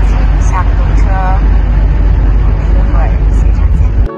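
Steady low rumble of a moving car heard from inside the cabin: engine and road noise. A few brief vocal sounds cut in over it.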